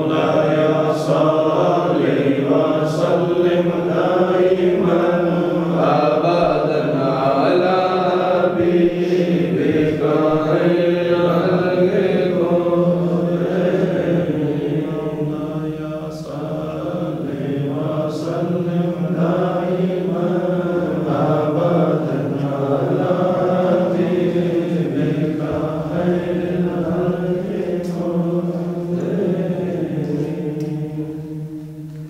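Devotional chanting by men's voices, a continuous melodic recitation over a steady low drone, dipping briefly about halfway and easing off near the end.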